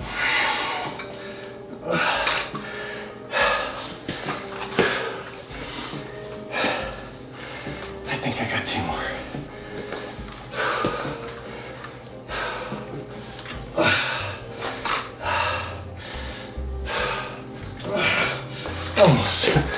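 A man's heavy breathing while lifting dumbbells: sharp, noisy exhales about every one to two seconds, over steady background music.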